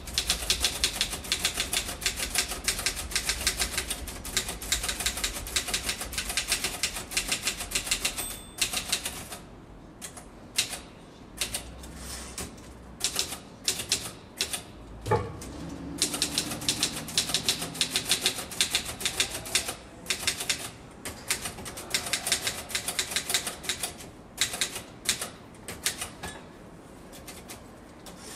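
Typing on a keyboard: fast runs of keystrokes broken by short pauses and scattered single taps, with one heavier thump about fifteen seconds in.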